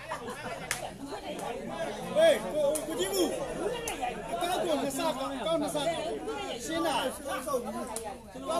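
Several people talking over one another in lively chatter, with a few sharp clicks or taps heard among the voices.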